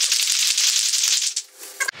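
A small group applauding, the clapping dying away about one and a half seconds in.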